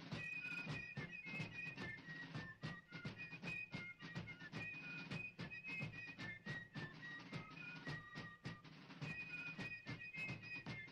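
Fife and drum music: a high piping melody moving between held notes over rapid, steady drum strokes.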